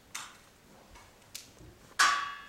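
Two light clicks about a second apart. Then, at the very end, a sharp clack that rings briefly as something is set down on the whiteboard's tray.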